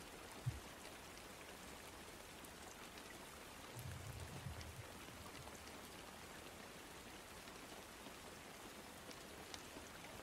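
Faint steady rain: an even hiss with scattered soft drop ticks, and a faint low rumble about four seconds in.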